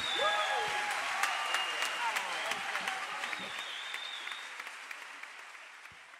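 Audience applauding, with a few whistles and shouts, fading out steadily.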